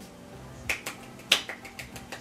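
Two people clapping their hands: a handful of sharp, uneven claps starting under a second in, the loudest a little past halfway.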